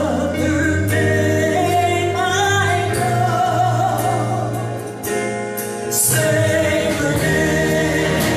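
Three women singing a gospel worship song together with a live band accompanying, the sung notes held long over a steady low bass.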